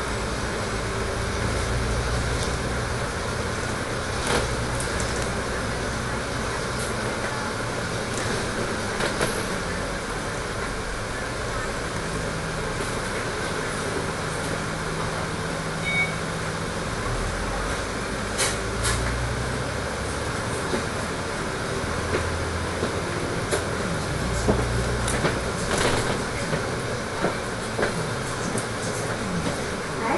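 Dennis Trident three-axle double-decker bus heard from inside while driving: its diesel engine and drivetrain run steadily, the engine note shifting several times as it accelerates and changes gear. Short rattles and knocks from the bus body and fittings come more often in the second half.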